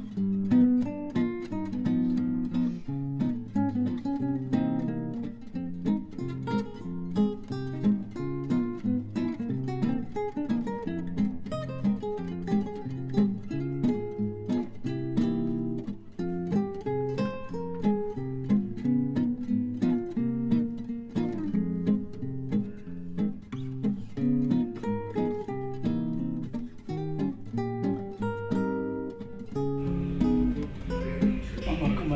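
Background music played on acoustic guitar: a continuous stream of plucked notes.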